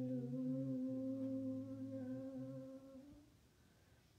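A slow hymn sung by a few voices, one low and one higher, each holding a long note. The singing stops about three seconds in.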